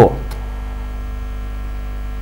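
Steady electrical mains hum, a low buzz with faint higher overtones, running unchanged. The tail of a spoken word fades out right at the start.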